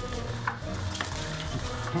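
Battery-powered Cat's Meow motorized wand toy running, its wand scratching and rustling around under the fabric cover, with a few light clicks. Background music plays over it.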